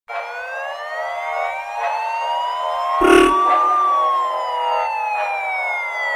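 A siren sound opening a drill beat: one slow wail whose pitch rises for the first three and a half seconds or so, then falls. A single low hit lands about three seconds in.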